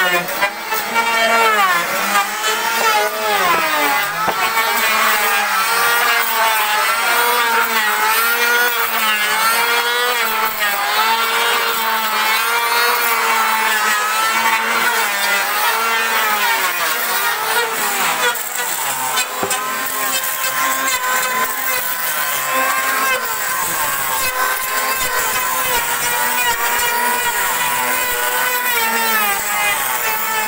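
Handheld electric wood planer running continuously and loudly, its motor pitch dipping and recovering about once a second or so as the blade bites into the board on each pass.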